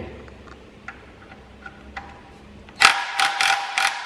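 Cordless impact wrench hammering on a seized oil drain plug in a loud burst of rapid blows about a second long near the end, with a steady motor whine under the blows. A few faint clicks come before it.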